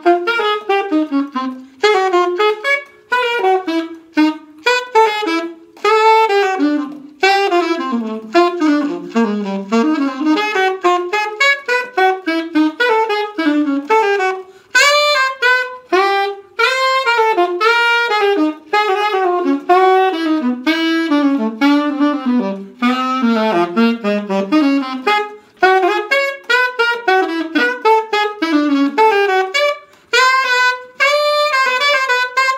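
Unaccompanied alto saxophone playing fast jazz lines, a steady stream of quick notes broken by short pauses between phrases.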